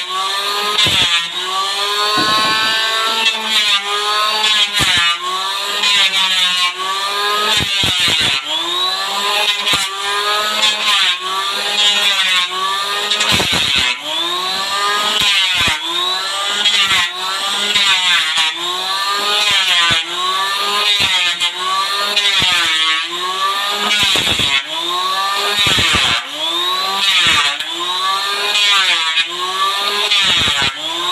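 Electric hand planer running and shaving the surface of a wooden board, its motor whine rising and falling in pitch with each back-and-forth pass, a little faster than once a second.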